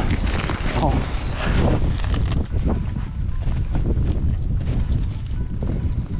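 Wind buffeting the microphone, a steady uneven low rumble, with brief indistinct voices in the first second or two.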